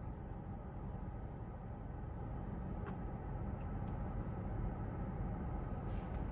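A quiet, steady low rumble of a car cabin, growing slightly louder over the seconds, during a long, quiet draw on a disposable vape. There is a single light click about three seconds in.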